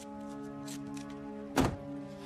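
Soft background music with sustained held notes, and a loud thunk about one and a half seconds in as a car door shuts.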